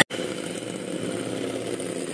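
Electric hand mixer running steadily, its beaters whisking raw eggs in a glass bowl until they turn frothy.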